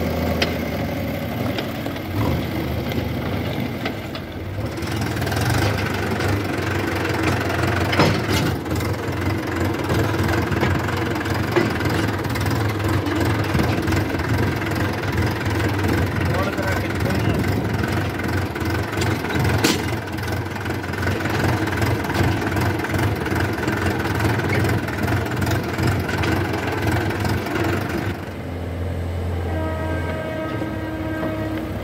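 Diesel engines of a JCB 3DX backhoe loader and a New Holland tractor running steadily at work, with two sharp knocks, one about eight seconds in and one around twenty seconds.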